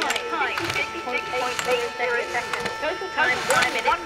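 People's voices calling out along the slalom course as a racer passes, over a faint steady tone.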